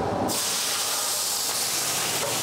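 Food tipped into hot oil in a wok over a high gas flame, setting off a loud, steady sizzle that starts a moment in and holds as the wok flares up.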